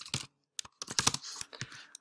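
Typing on a computer keyboard: a quick run of keystroke clicks, with a short pause early on and a denser run after it.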